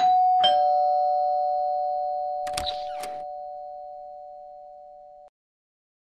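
Two-tone ding-dong doorbell chime, a higher note and then a lower one half a second later, ringing out and fading for about five seconds before cutting off suddenly. Two short knocks sound about halfway through.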